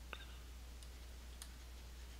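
A few faint, short clicks of a stylus on a pen tablet as a word is handwritten, over a steady low electrical hum.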